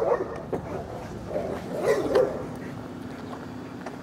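A dog barking in short rough bursts, once at the start and again in a quick cluster about two seconds in, with a faint steady hum underneath in the second half.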